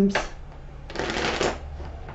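A tarot card deck being shuffled by hand, with a dense papery shuffle about a second in that lasts about half a second, and lighter card rustling around it.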